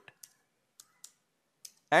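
A few faint, unevenly spaced computer keyboard keystrokes, about five clicks, as a line of code is typed.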